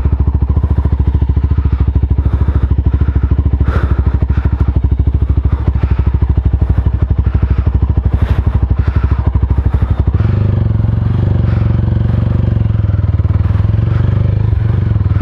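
Mahindra Mojo's single-cylinder engine running at low revs with an even, rapid beat of firing pulses as the motorcycle is ridden slowly over a sandy dirt track. About ten seconds in the note changes and smooths out.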